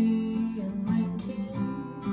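Acoustic guitar strummed, with a strong strum at the start and lighter strums about every half second, the chords ringing between them.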